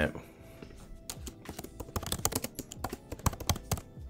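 Typing on a computer keyboard: a quick run of keystrokes starting about a second in and lasting a little under three seconds, entering a company name into a search box.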